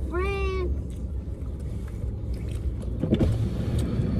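A short, high, rising 'mmm' of enjoyment from a person eating, then the low steady hum of a car idling with the occupants chewing.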